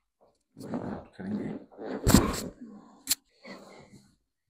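A woman groans and breathes hard through a side-lying chiropractic adjustment of the lower back, the loudest burst about two seconds in. A single sharp click follows about a second later.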